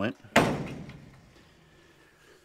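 Heavy-duty wood-framed wire screen door of a chicken coop slamming shut once, a sharp bang about a third of a second in that rings away over about a second.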